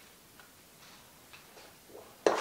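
Near silence: room tone with a few faint ticks about every half second.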